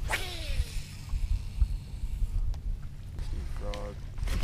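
Baitcasting reel on a cast: a sharp click, then the spool whirring out and falling in pitch as it slows over about half a second. Wind rumbles on the microphone, and near the end there is a short voice-like sound.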